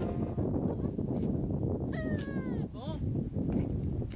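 Low, uneven outdoor rumble, like wind on the microphone, throughout. About two seconds in there is a short high call that slides down in pitch, followed by a few quick upward sweeps.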